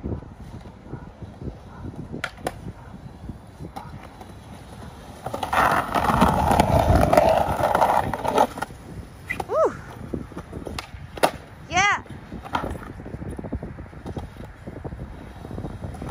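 Skateboard riding on concrete: wheels rolling with sharp clacks of the board. About five seconds in, the board grinds along a painted concrete curb with a loud scraping for about three seconds.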